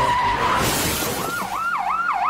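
Recorded sound effects of tyres squealing, then an emergency-vehicle siren starting about a second in, its pitch sweeping rapidly up and down about two and a half times a second.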